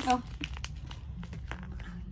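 Light crinkling and rustling of plastic toy packaging, with scattered small clicks as the doll's accessories are handled.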